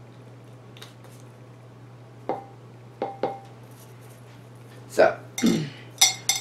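A metal spoon clinking lightly against a bowl and a slow cooker's stoneware pot a few times, some clinks leaving a short ringing tone, as crumb topping is spooned onto the apples. A louder knock or scrape comes about five seconds in.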